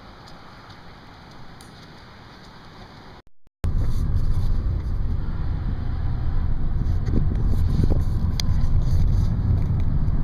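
Faint outdoor background, then after a cut about a third of the way in, the loud, steady low rumble of a car driving, heard from inside the cabin. A few light clicks come in the second half.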